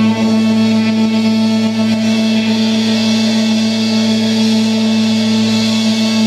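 Indie rock band playing live: a loud, sustained droning chord, held steady throughout and growing brighter a few seconds in.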